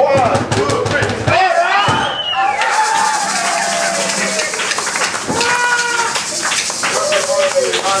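Live acoustic guitar strumming and percussion stop about a second and a half in, giving way to shouts, whoops and cheering from the small crowd, with clapping toward the end.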